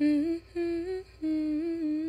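A voice humming a short tune in held notes that step up and down, with brief breaks between phrases.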